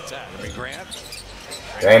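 A basketball dribbled on a hardwood court, with faint broadcast commentary under it. A man's voice starts loudly near the end.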